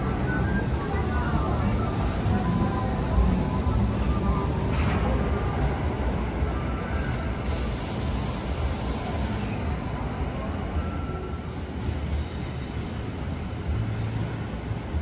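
Seattle Monorail's rubber-tyred Alweg train running on its elevated beam: a steady low rumble, with a brief high hiss about halfway through. Faint music plays in the background.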